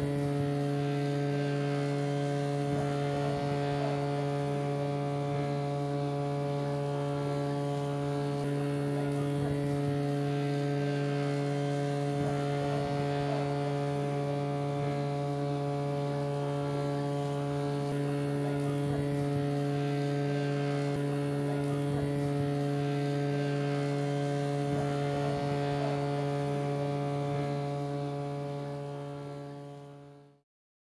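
A steady low hum held on one pitch, rich in overtones, fading out near the end.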